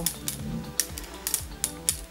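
Several sharp, uneven plastic clicks from a flexible detangling brush being bent in the hands, over background music.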